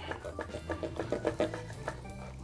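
Steak knife sawing back and forth through a grilled bacon-wrapped filet mignon and the butcher's string tied around it, a quick run of short scraping strokes. Soft background music runs underneath.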